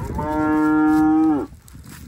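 One long moo from a head of cattle, held at a steady pitch for over a second, then dropping in pitch and cutting off abruptly.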